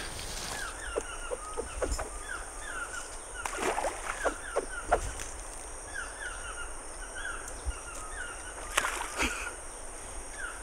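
Wild birds chirping over and over in short downward-sliding notes, against a steady high-pitched whine. A few soft knocks and rustles break in now and then.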